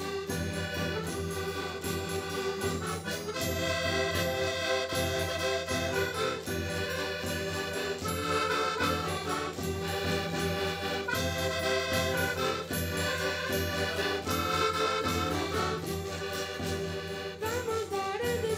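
Accordions leading an instrumental passage of a traditional Portuguese Reis song, playing held chords with the rest of the folk band behind them.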